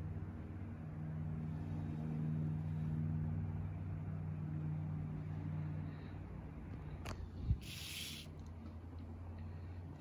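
A steady low mechanical hum runs throughout. About seven seconds in there is a sharp click and a dull thump, followed by a brief hiss.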